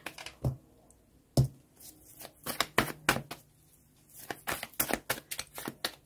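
Tarot cards being handled on a cloth-covered table: irregular light clicks and taps, with one louder knock about a second and a half in.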